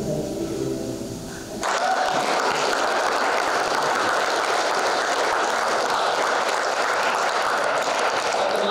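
The last chord of an acoustic string band (fiddle, guitars, upright bass) dies away, then applause from a small audience breaks out suddenly about a second and a half in and carries on steadily.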